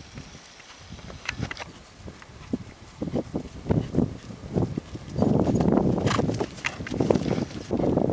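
Unshod hooves of a horse under saddle striking a dirt arena at a trot, the hoofbeats scattered at first. From about five seconds in they become louder and are mixed with a rushing noise.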